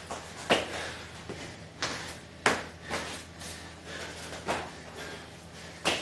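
A man doing bar-facing burpees on a concrete garage floor: hard, puffing breaths and thumps of his hands and feet landing. About six sharp sounds come at uneven intervals.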